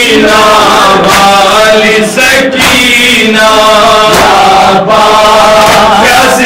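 Men chanting a noha, the Shia Muharram lament, loudly, in long sung phrases with short breaks between them.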